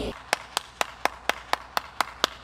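One person clapping hands steadily, about four claps a second.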